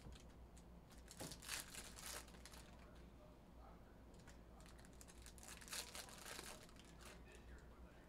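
Faint rustling and light clicking of a stack of trading cards being handled and squared up, in two short clusters: one a little over a second in and another just past the middle.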